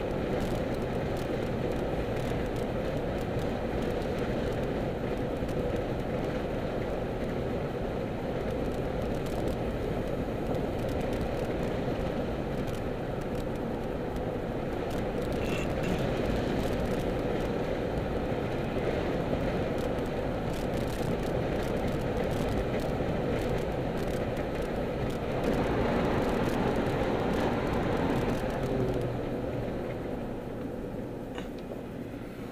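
Steady road and engine noise of a moving car heard from inside its cabin, a little louder for a few seconds near the end.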